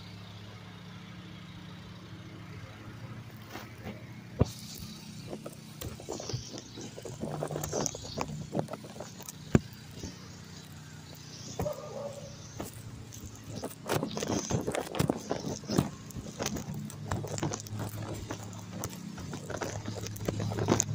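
A motor vehicle's engine running with a steady low hum, under irregular knocks and scuffs from footsteps and a handheld phone being moved about.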